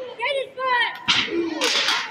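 Sharp slapping crack of a strike landing in a wrestling brawl, about a second in, followed by a louder, rougher impact near the end, with shouting voices before it.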